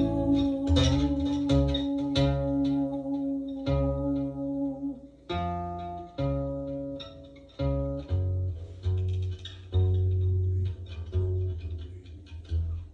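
Guitar playing with a keyboard: a held note over the first five seconds, then separate low notes picked one at a time, each dying away.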